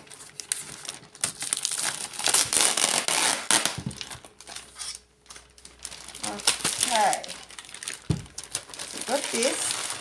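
Plastic postal satchel crinkling and rustling as it is torn open and a wrapped parcel is pulled out, the loudest crackling in the first half.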